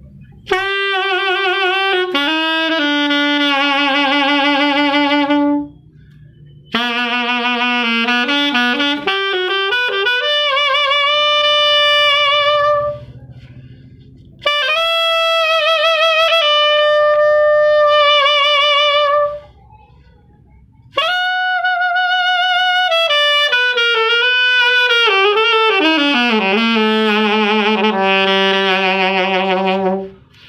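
Solo alto saxophone playing a slow melody in four phrases, with short breaths between them and vibrato on the held notes.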